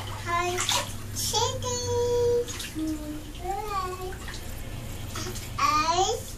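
A toddler babbling in short high-pitched bursts, with one drawn-out note about two seconds in, while bath water laps and splashes around her.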